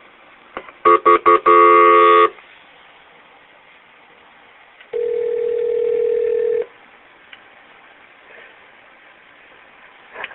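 Telephone line tones on a recorded 911 call as it is transferred to another dispatcher: a quick run of short beeps and a longer tone about a second in, then one steady ringing tone about five seconds in.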